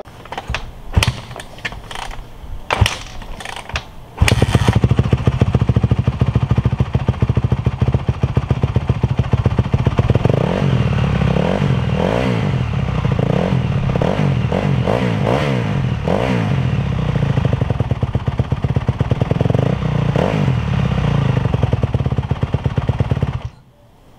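A 2011 Honda CRF250R's single-cylinder four-stroke engine being kick-started for the first time after a top-end rebuild. A few knocks of the kick-starter come first, then it fires about four seconds in and runs. From about ten seconds on it is revved up and down in repeated blips of the throttle, and it is shut off just before the end.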